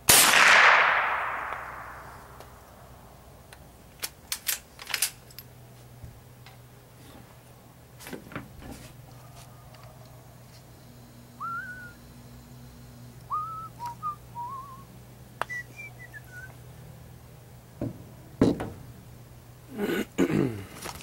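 A single shot from a Henry lever-action .22 LR rifle: one sharp report with an echo that fades over about two seconds. About four seconds later come a few sharp clicks, and a bird chirps several times in the middle.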